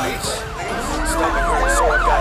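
Several sirens sounding together in quick rising-and-falling sweeps that overlap, a few per second, over a steady low hum.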